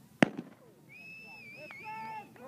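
A single starting-pistol shot about a fifth of a second in, sharp and loud with a short ringing tail, signalling the start of the race. About a second later a high, wavering cry rises from the spectators.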